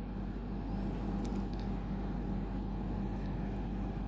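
Steady low background rumble and hiss with no distinct event.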